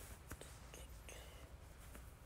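Near silence over a low room hum, with faint whispering and a few soft clicks.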